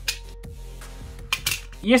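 A utility knife cutting through the insulation of a coaxial antenna cable: a few faint clicks, then a cluster of short sharp scrapes about a second and a half in, over faint background music.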